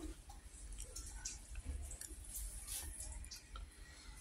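Faint, scattered soft clicks over a low steady rumble, with no clear single event.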